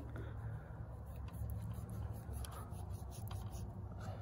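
Knife cutting through a gray squirrel's hide under the tail to start skinning it: a run of short, irregular scratchy cuts from about a second in, over a low steady rumble.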